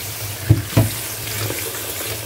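Tap water running into a stainless-steel sink as cut long beans are rinsed in a plastic colander over a bowl. Two dull knocks come about half a second and just under a second in.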